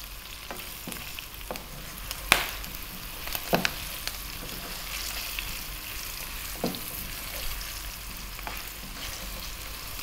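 Battered chicken strips and onion sizzling in hot oil in a wok on high heat, stirred with a slotted spatula that knocks against the pan a few times.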